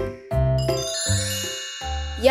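A bright, chiming sparkle sound effect starts about half a second in and rings on over many high tones, fading by the end. Under it runs children's backing music with a steady bass beat.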